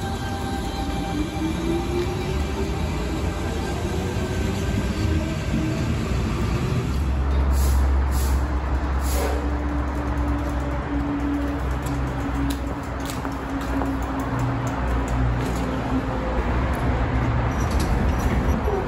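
Electric double-deck suburban train at a station platform: a motor whine rises in pitch over the first few seconds as it moves off, followed by low rumbling, all mixed with soundtrack music.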